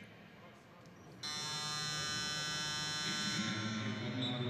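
Basketball arena's game horn sounding one loud, harsh buzz of about two seconds, starting a little over a second in, signalling a timeout.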